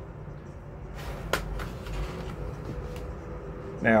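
A fork clicking and scraping in a container of noodles as food is picked up, with the sharpest click about a second and a half in, over a low steady room hum.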